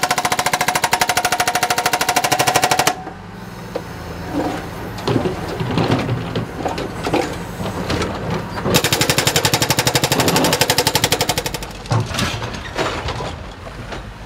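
Hydraulic breaker on a Cat backhoe loader hammering reinforced concrete in two rapid bursts, one of about three seconds at the start and another from about nine to eleven seconds in. Between the bursts the loader's diesel engine runs with knocks and clatter of broken concrete.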